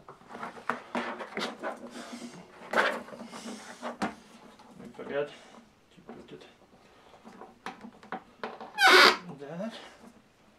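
A man's voice muttering without clear words while he handles the table's plastic clamps and aluminium poles, with scattered clicks and knocks. A brief, loud sound of wavering pitch comes about nine seconds in.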